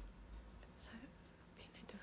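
Near silence: room tone with a woman's soft breaths and faint whispered mouthing, her voice just starting up at the very end.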